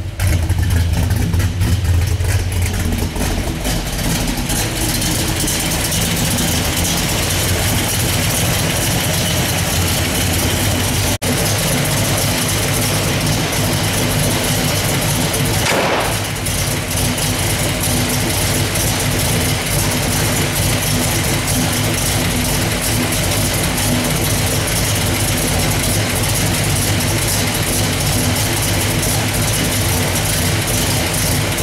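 A 1964 Pontiac GTO's 428 V8, bored 30 over, idling steadily, heard through its exhaust, with a deeper, heavier rumble in the first few seconds.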